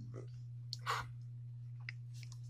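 Rotary function dial of a FLIR CM83 clamp meter clicking through its detents as it is turned, a few separate clicks about a second in and near the end, over a steady low hum.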